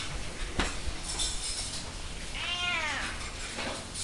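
A domestic cat meows once, a single call that rises then falls in pitch, about two and a half seconds in. A short sharp tap sounds about half a second in.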